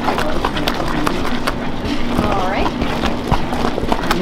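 A paddle stirring a foaming batch of peanut brittle in a copper kettle, with irregular knocks and scrapes as it strikes the kettle's sides. A short voice sound comes about two seconds in.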